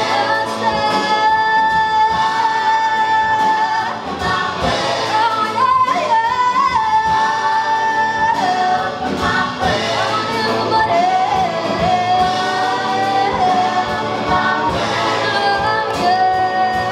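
A live rock band and a large group of singers performing together, with long held sung notes over drums and keyboard. About six seconds in, a lead voice runs through a short, quickly changing phrase before the held notes return.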